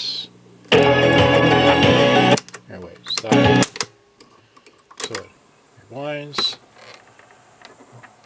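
Crown CSC-640SW boombox cassette deck being worked. About a second in, a loud burst of music from the tape plays and cuts off sharply, followed by clacks of the piano-key transport buttons and short snatches of tape sound as the deck is switched between functions.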